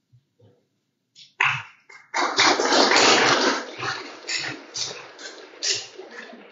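An audience applauding. The applause starts about a second and a half in, swells to a full round, then thins out into scattered claps.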